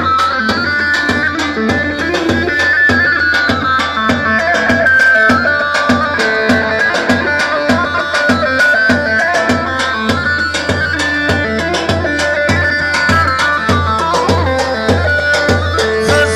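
Live Kurdish wedding dance music played through loudspeakers: an amplified melody line over a steady, driving drum beat, with no singing.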